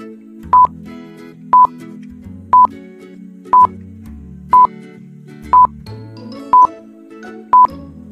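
Electronic countdown timer beeping once a second, eight short high beeps, over soft background music.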